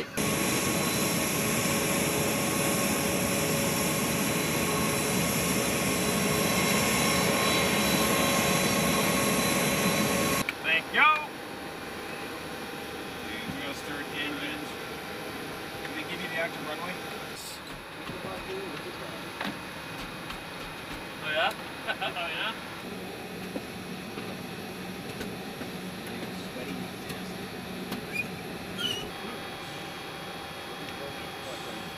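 Jet aircraft noise: a steady rushing hiss with several fixed whine tones for about the first ten seconds, cutting off suddenly. After that comes quieter aircraft cockpit ambience with brief, muffled bits of voices.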